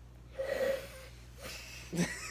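A woman takes a big, hard sniff through her nose, about half a second long, starting about half a second in, followed by a fainter breath a little later.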